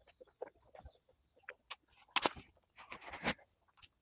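Close-miked eating sounds from a person chewing a mouthful of rice and fried egg: scattered wet smacks and clicks, with a louder sharp smack about two seconds in and a longer, noisier burst around three seconds in.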